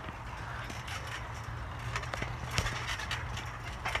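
Scattered light knocks and creaks from a backyard trampoline's mat and springs as two wrestlers move and grapple on it, over a low steady hum.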